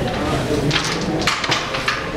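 Indistinct voices of people talking in a room.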